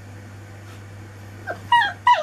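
Four-week-old Anglo Wulfdog puppy giving a brief squeak and then a loud, high-pitched cry near the end, dipping slightly in pitch.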